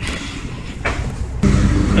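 Quiet outdoor ambience with a faint knock, then about one and a half seconds in a lawn mower engine cuts in suddenly, loud and running steadily.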